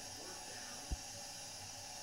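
Steady low hiss of room tone, broken by a single short, soft thump just under a second in.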